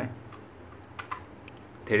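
A few faint, light clicks: one early, two close together about a second in, and a sharper one soon after.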